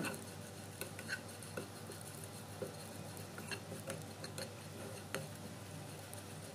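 Black spatula stirring shallots and grated coconut in a nonstick frying pan: faint, irregular light ticks and scrapes against the pan.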